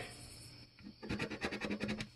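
A metal coin scratching the coating off a paper lottery scratch-off ticket: a quick run of short rasping strokes starting about halfway through, after a brief quieter pause.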